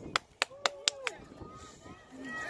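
Four quick, evenly spaced hand claps from a spectator, about four a second, with faint voices behind them.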